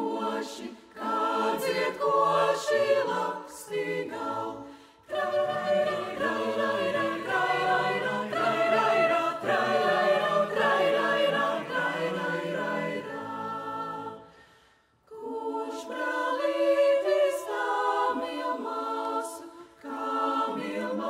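Mixed choir of women's and men's voices singing a cappella in several parts. The voices break off briefly about five seconds in, then pause almost to silence near fifteen seconds before coming back in together.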